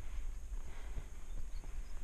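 A horse walking on dirt under a rider, with faint, irregular hoofbeats over a low rumble on the head-mounted camera's microphone.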